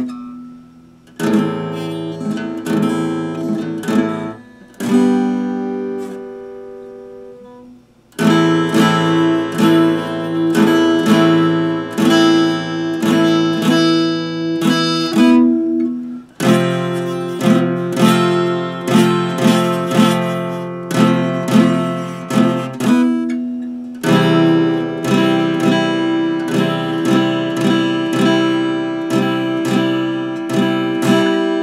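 Epiphone acoustic-electric guitar strummed in chords, with no singing. Early on, single chords are struck and left to ring out, the longest a few seconds from the start; from about eight seconds in, steady rhythmic strumming runs on with only brief breaks.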